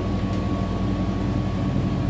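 Steady low drone of a parked city transit bus running, heard inside the passenger cabin, with a thin steady whine above it.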